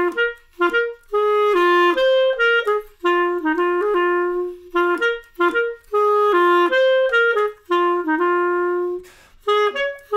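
Unaccompanied clarinet playing a swung jazz waltz melody in short phrases of quick and held notes, with brief pauses between phrases.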